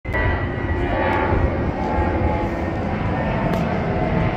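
A loud, steady mechanical rumble with a faint steady whine over it, like an engine running close by.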